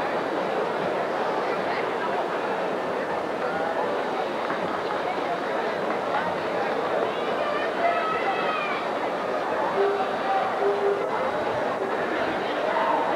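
Crowd noise from a large audience: many voices at once in a steady hubbub, with a few brief higher calls about two-thirds of the way through.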